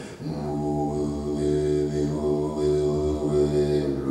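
A man's voice holding a low, steady chanted drone into a microphone, with a brief break right at the start before the tone resumes, and its upper overtones shifting slowly as it is held.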